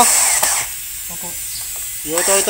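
Cordless drill run in a short burst against a wooden baseboard, followed by a quieter stretch.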